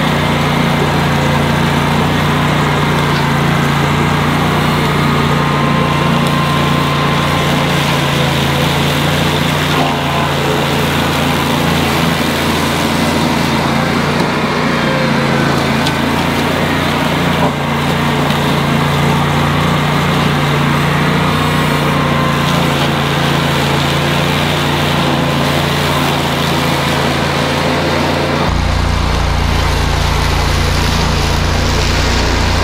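Ventrac 4500K compact tractor's Kubota diesel running under load at steady speed, driving its Tough Cut brush mower deck through thick overgrown brush and grass. The steady engine hum changes tone near the end, with a stronger low rumble.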